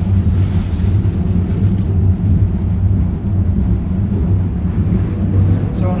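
Wind-driven windmill millstones, each about a tonne, grinding wheat into flour: a steady low rumble that holds even throughout.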